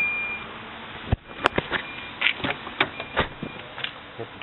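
An electronic beep from the car stops almost at once. About a second in there is a sharp knock, then a run of lighter clicks and taps, with faint short beeps among them.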